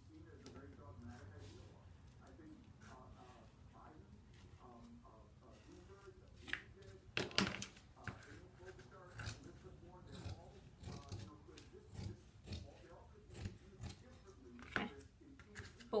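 Dressmaking shears cutting through folded layers of sheer fabric: a string of short snips about a second apart through the second half.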